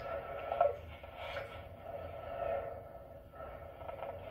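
Faint, muffled hiss with a low hum and a few soft swells, from a microphone signal passed through a Zoom MultiStomp effects pedal.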